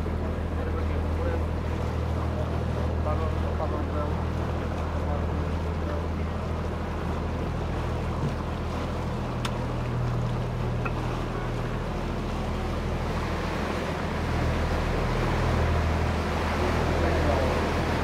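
Canal tour boat's engine running with a steady low hum, over a wash of water and wind noise; it grows a little louder near the end.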